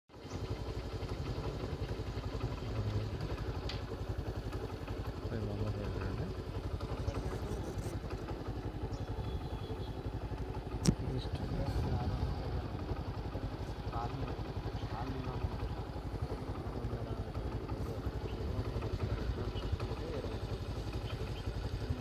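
A small engine idling steadily, its low rumble pulsing rapidly and evenly, with one sharp click about halfway through.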